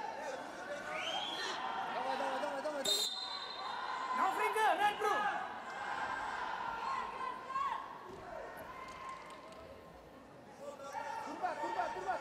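Wrestling-arena sound: men's voices call out from around the mat, loudest about four to five seconds in. About three seconds in there is a sharp slap, followed by a short, steady referee's whistle blast as the bout restarts.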